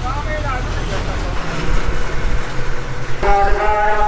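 Steady low rumble of a bus engine and road noise, heard from inside the moving bus. About three seconds in, a melody with long held notes joins it.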